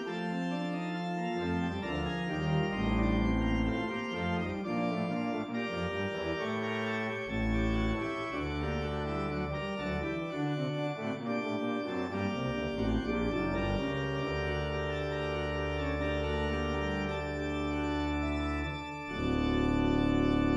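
Organ music with slow, sustained chords. A long chord is held through the second half, and a fuller, louder chord begins near the end.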